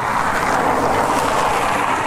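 A passing vehicle on the road: a steady rush of tyre and road noise that swells and then eases off near the end.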